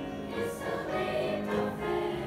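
Children's choir singing, holding sustained notes in several voices.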